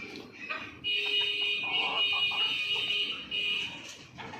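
A steady, high-pitched buzzing tone starts abruptly about a second in, holds for nearly three seconds with one brief dip, and then stops.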